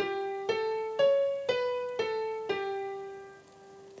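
Piano playback from Dorico notation software playing a simple one-line melody at 120 beats per minute, one note every half second: G, A, C sharp, B, A, then a long G that fades out over the last second and a half.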